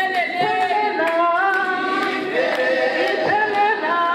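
Congregation singing together in several voices, with long held notes that step up and down in pitch.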